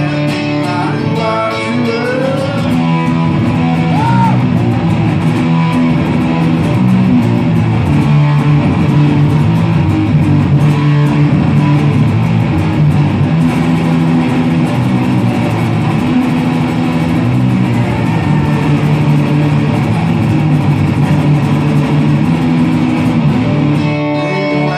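Acoustic guitar played live through amplification: full strummed chords over a low bass line, continuous and loud.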